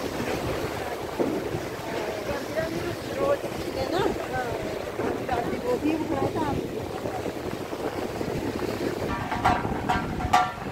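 Steady rush of the fast glacial Alaknanda river running below, with the voices of a passing crowd of pilgrims talking. A short pitched call stands out near the end.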